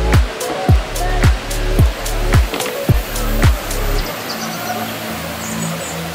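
Background music with a deep, falling bass kick nearly twice a second; about four seconds in the kicks drop out, leaving only held notes.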